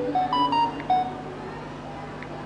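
Mobile phone playing a short electronic jingle: about five quick beeping notes in the first second, stepping up in pitch and then back down.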